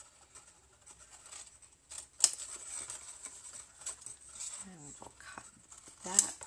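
Scissors cutting through cardstock: a few sharp snips, the loudest about two seconds in. A short voice sound, falling in pitch, comes near the end.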